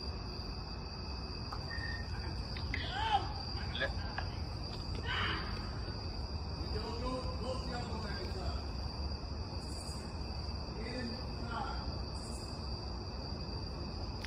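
A steady high trill of night insects, such as crickets, runs throughout, with faint distant voices calling now and then.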